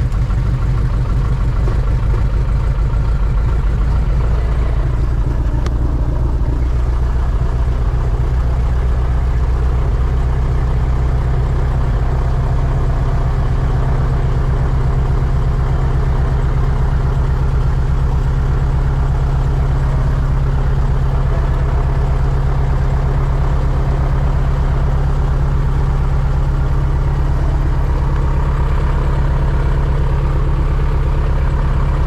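Light aircraft's engine and propeller idling steadily on the ground, heard loud from inside the cabin.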